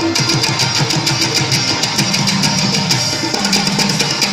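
Live instrumental Pashto folk music: hand drums (tabla) playing a fast, steady rhythm under a stringed instrument, with no singing.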